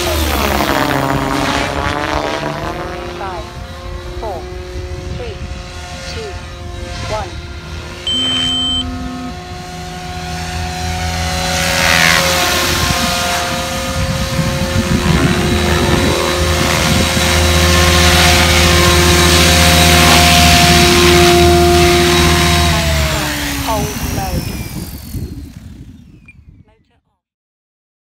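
Goblin 570 Sport electric RC helicopter in flight: the whine of its electric motor and drive gears over the whoosh of the rotor blades. The pitch sweeps as it passes close near the start and again about twelve seconds in. Near the end the pitch drops and the sound fades as it lands and the rotor spools down.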